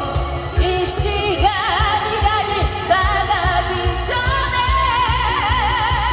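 A woman singing live into a handheld microphone, her held notes wavering with vibrato, over a loud Korean pop backing track with a steady bass beat.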